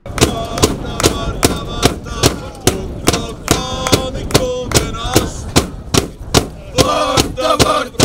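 Football fans singing a chant to a steady drum beat of about two and a half strikes a second. The singing grows stronger near the end.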